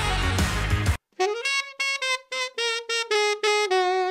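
A funk band with saxophone playing, cut off abruptly about a second in. Then a solo alto saxophone plays a funk lick of short, separated notes, about three a second.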